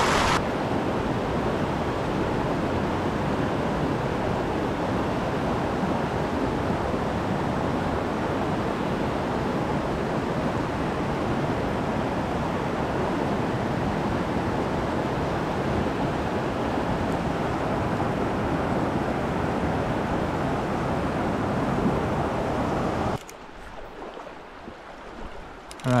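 Mountain stream rushing over boulders, a steady wash of water noise. About 23 seconds in it cuts off abruptly to a much quieter, gentler flow.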